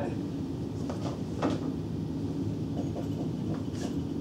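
Classroom room tone: a steady low hum with a few faint brief sounds, and near the end a short high squeak of a dry-erase marker writing on the whiteboard.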